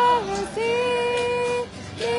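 A group of voices, women's the loudest, singing a worship song in long held notes, with acoustic guitar accompaniment.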